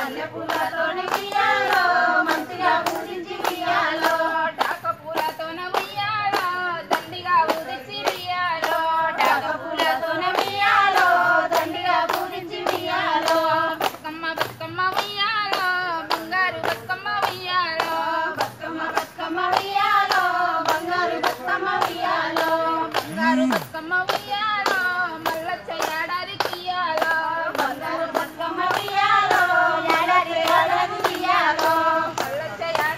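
Group of women singing a Telugu Bathukamma folk song in unison, with steady rhythmic hand clapping about twice a second keeping time.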